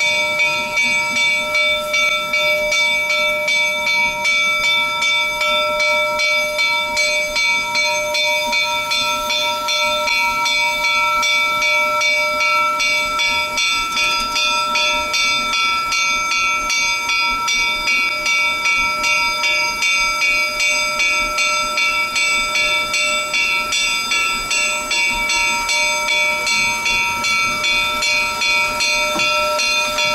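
A steam locomotive's bell ringing steadily at about two strikes a second, over a hiss of steam.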